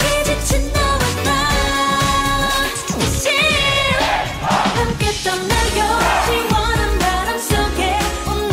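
Korean pop song sung by a female group over a dance beat, the bass dropping out briefly in the middle before the beat returns.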